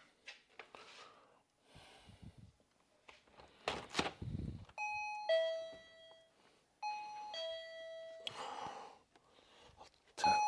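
Electronic two-tone "ding-dong" chime, a higher note dropping to a lower one and ringing out, sounding twice about two seconds apart. A short clatter comes just before the first chime.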